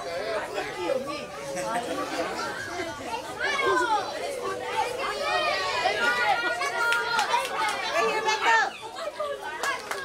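Many voices talking at once, children's voices among them: the chatter of a gathered crowd.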